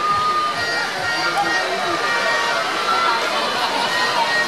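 Stadium crowd in the stands, many voices shouting and chattering at once, with a few brief held high notes over the din.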